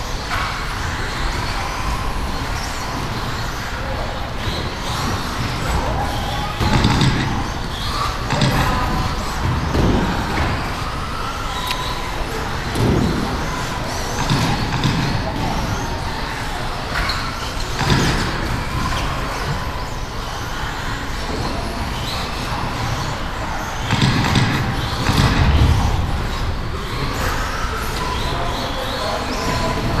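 Brushless electric 1/10-scale RC buggies racing on a carpet track: a steady mix of motor whine and tyre noise, with indistinct voices in the background and a few knocks.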